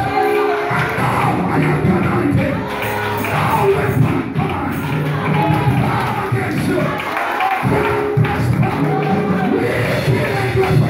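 A man singing a gospel song into a handheld microphone, amplified in a large hall, with music behind his voice.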